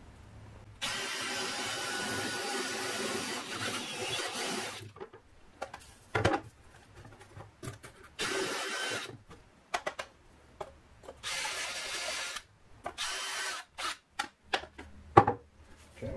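A DeWalt cordless drill with a step bit cuts a hole through a wooden plate. It runs for about four seconds, then in several shorter bursts with pauses between, and there is a sharp knock near the end.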